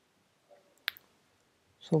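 Near silence broken by a single sharp click just under a second in, then a man's voice starts speaking at the very end.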